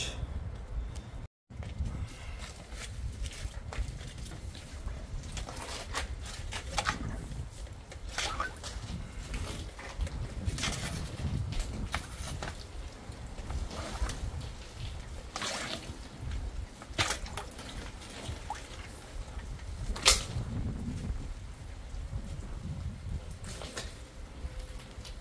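Water sloshing and splashing in a backed-up drain inspection chamber as a drain rod is worked down through the standing water, with scattered sharp clicks and a steady low rumble.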